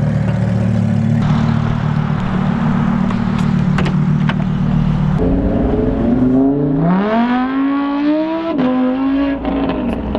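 A Lamborghini Huracán's V10 idles steadily for about five seconds. Then a car accelerates: the engine note climbs steadily and drops at an upshift about eight and a half seconds in.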